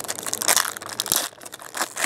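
Foil wrapper of a Topps Chrome trading card pack being torn open and crinkled in the hands: a dense crackling that eases about a second and a half in, with a second short burst near the end.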